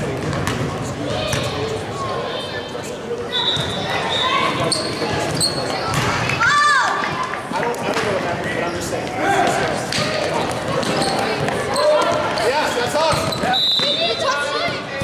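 A basketball bouncing and dribbling on a gym floor during a youth game, with sneakers squeaking in short high bursts and spectators' voices and shouts echoing through the large hall.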